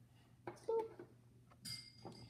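Small plastic toy pieces being handled and set down: a light click about half a second in and a brief clink near the end, over a low steady hum.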